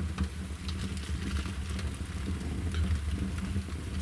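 Wood fire crackling in a brick barbecue hearth during a test firing of a freshly built smoke hood: scattered small pops and snaps over a steady low rumble.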